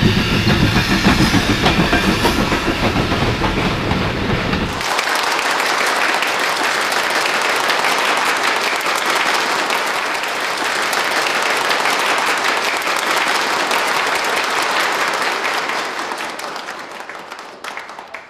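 A steam train running, a deep rhythmic clatter, cut off suddenly about five seconds in by a large audience applauding; the applause fades out near the end.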